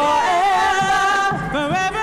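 A church praise team singing a worship song with microphones, a lead voice holding long, slightly wavering notes over the other singers.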